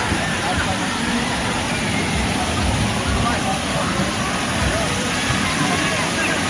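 Water-park poolside ambience: faint distant voices of people chattering and calling over a steady rushing noise, with wind buffeting the microphone.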